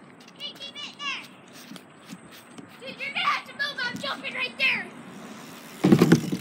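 Children's voices calling out, some distance off. Just before the end, a loud thump as a bicycle's tyres hit a small jump ramp.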